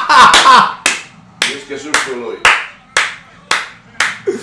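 A man laughing hard, then clapping his hands about seven times, roughly two claps a second, with laughter between the claps.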